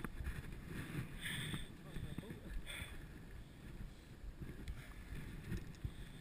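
Muddy water sloshing and splashing in a few short bursts around a stuck dirt bike, over a low rumble of wind on the microphone.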